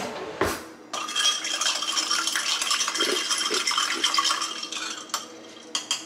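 Metal spoon stirring a mixed drink in a drinking glass, with rapid clinking against the glass from about a second in, easing off near the end.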